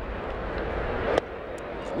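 Ballpark crowd noise swelling during an 0-2 pitch, then a single sharp pop just past a second in as the pitch smacks into the catcher's mitt on a swinging strike three; the crowd noise falls back after it.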